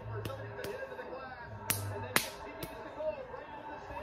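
Hockey game audio playing from a TV speaker and picked up across the room: faint music and voices with five sharp cracks at irregular intervals, the loudest about two seconds in.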